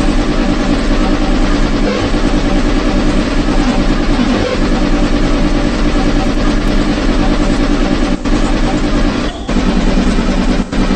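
Very fast, heavily distorted hardcore electronic music: rapid kick drums run together into a dense, buzzing wall of sound, broken by two brief gaps in the last two seconds.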